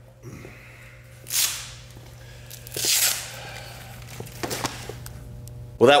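A weightlifter's two hard, hissing breaths, one about a second and a half in and another about three seconds in, after straining at a 365 lb bench press that did not go up. A steady low hum runs underneath, with a few light clicks.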